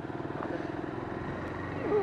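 A vehicle engine running steadily at an even speed while moving.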